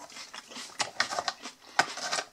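A cardboard food box being picked up and handled close to the microphone: irregular light clicks and rustles, the sharpest about two seconds in.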